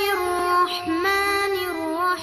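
A high voice singing long held notes that slide from one pitch to the next.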